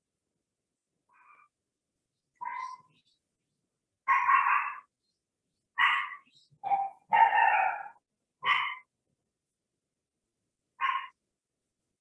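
A dog barking: about eight short barks at irregular intervals, with longer gaps near the start and the end.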